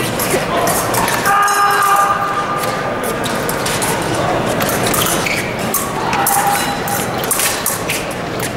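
Busy fencing-hall ambience: indistinct crowd chatter with scattered clicks of blades and footwork on the metal strips. An electronic scoring-machine tone sounds for under a second about one and a half seconds in, and a fainter one near six seconds.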